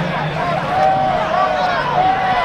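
Several voices shouting and calling out across a football field, overlapping and drawn out, with no intelligible words.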